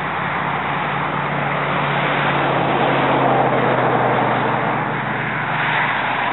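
A steady rushing noise with a low engine hum under it, swelling through the middle and easing off again, like a motor passing by.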